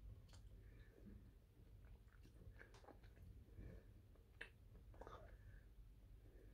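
Very faint chewing and small wet mouth clicks of someone eating a soft chocolate bar, with scattered soft ticks.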